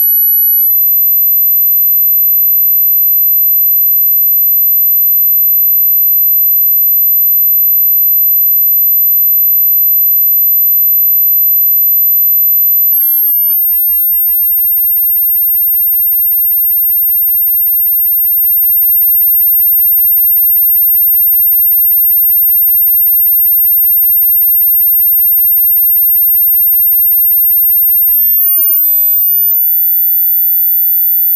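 A single pure sine-wave test tone from a GW Instek function generator, very high-pitched at about 12 kHz. It steps up in pitch about 13 seconds in and again near the end, reaching about 14 kHz. It is a high-frequency sweep checking how high a tone YouTube's audio will pass.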